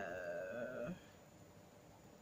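A woman's drawn-out hesitation sound, a long wavering "uhh" that falls in pitch and stops about a second in, followed by quiet room tone.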